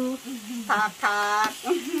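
Food sizzling steadily in hot fat, a faint hiss beneath women's voices, one of which holds a long note about a second in.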